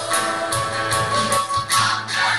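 A youth choir singing a gospel song with live band accompaniment: guitar and a tambourine struck about twice a second.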